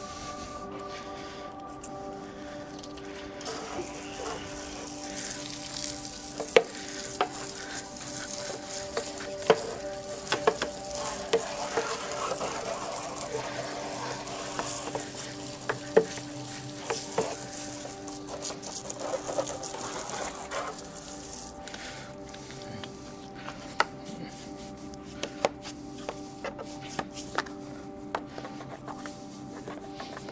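Garden hose spraying water onto a motorbike, a steady hiss that starts a few seconds in and stops about two-thirds of the way through, with scattered sharp knocks and scrubbing against the wheel.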